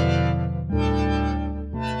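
ROLI Seaboard RISE playing an MPE synth pipe-organ sound in Ableton: three sustained chords, each held at a steady pitch, changing about a second apart. The pitch bend is turned down, so slides on the keys no longer bend the notes.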